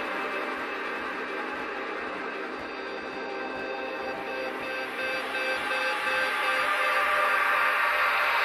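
Techno track in a breakdown: sustained synth tones with no bass or kick drum underneath, the level slowly building through the second half.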